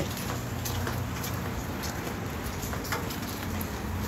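Rain falling: a steady hiss with a few sharper ticks of drops scattered through it.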